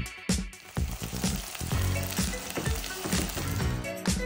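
Oil sizzling in a pot as whole spices and chopped onions fry, under background music with a beat.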